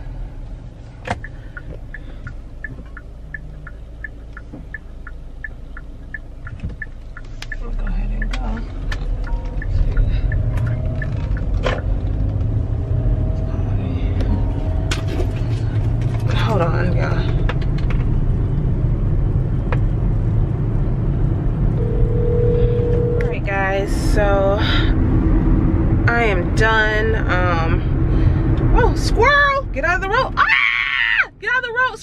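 Car cabin road and engine rumble while driving, growing louder about eight seconds in as the car picks up speed. A few seconds in there is a quick regular ticking. In the second half a voice wavering in pitch, singing, comes over the rumble.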